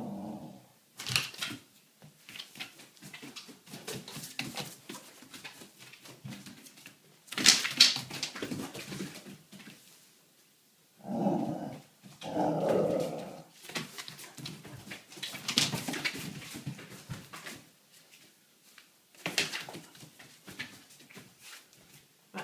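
Entlebucher mountain dog vocalising in play, with two longer stretches of vocal noise a little past the middle, among scattered knocks and scuffles.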